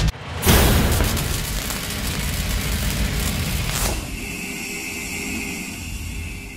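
A deep boom about half a second in, its rumble dying away slowly over several seconds. A second hit near four seconds leaves a steady high ringing tone that fades out, in the manner of an edited intro sound effect.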